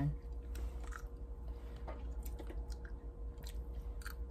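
A person chewing fresh blueberries, with soft, irregular mouth clicks. A steady low hum runs underneath.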